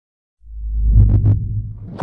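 Logo intro sound effect: a deep low rumble swells up about half a second in, with two quick thuds near the middle, then fades toward a sharp hit at the end.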